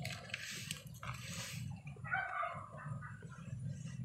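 Garden soil rustling softly as it is scooped and packed into small plastic cups, with a brief faint animal call a little past halfway.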